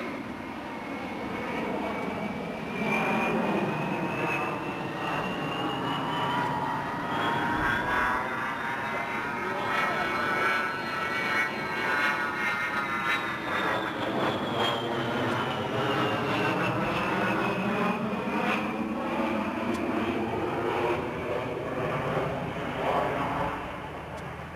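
Fairchild A-10 Thunderbolt II's twin turbofans whining as the jet flies overhead. The high whine climbs in pitch for about ten seconds and then falls back, over a steady jet rumble with a swirling, phasing sweep.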